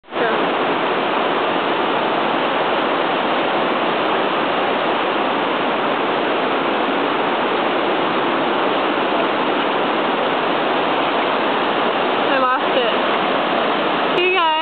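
Steady rush of fast-flowing white water, an unbroken wash of sound at an even level throughout.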